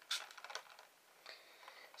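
Faint clicks and a short hiss of a handheld misting fan's pump spraying water, soon after the start and again more weakly past halfway.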